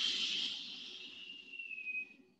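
A long hissing exhale through the teeth, an "sss" breath made to activate the navel core. A faint whistling tone in it slowly drops in pitch, and the breath fades out near the end.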